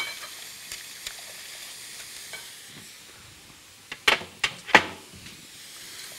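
Wire whisk beating eggs and milk in a glass bowl, with a quick run of sharp clinks of the whisk against the glass about four seconds in. A steady sizzle of food frying in a pan runs underneath.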